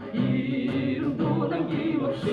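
A group of people singing a song together in chorus, holding long notes.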